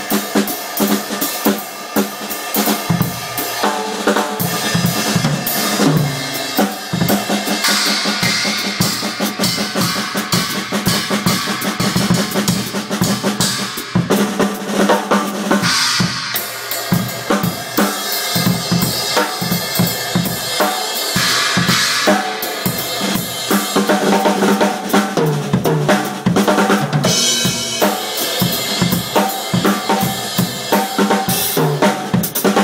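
Drum kit played as a continuous groove, built around a 14x6-inch SJC Custom snare drum with bass drum and toms. Cymbal crashes ring out every several seconds, about four times in all.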